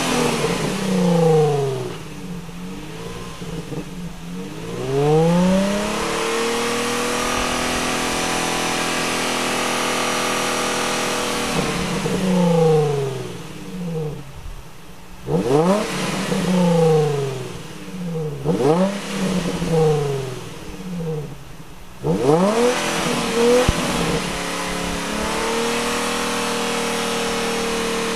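A 2003 Nissan 350Z's 3.5-litre V6 revved over and over, the revs climbing and falling back. Twice the revs are held steady for several seconds. This is the engine burning off a Seafoam engine-cleaner treatment.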